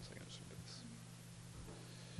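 Faint whispered words close to a podium microphone, a few soft hissing syllables in the first second, over a steady low electrical hum.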